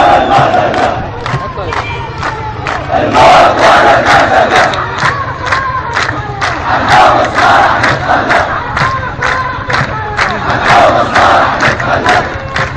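A large crowd of protesters chanting slogans in unison, a shouted phrase swelling about every three to four seconds, with steady rhythmic hand clapping.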